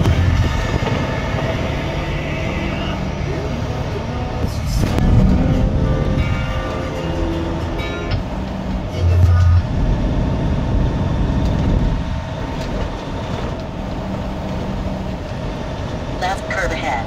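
Steady engine and road rumble heard from inside a truck's cab while driving, with a couple of brief louder low thumps, about five and nine seconds in.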